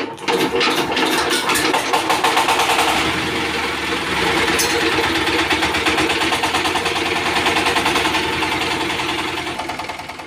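Single-cylinder stationary diesel engine of a paddy-husking machine running steadily, fuelled with home-made diesel distilled from burned waste rubber.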